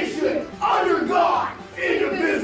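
A man and several children reciting a pledge together in unison, in loud chanted phrases of about a second each with short breaks between them.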